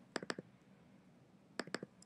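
Computer mouse clicking: two quick clusters of sharp clicks about a second and a half apart, selecting an item in a website editor's page list.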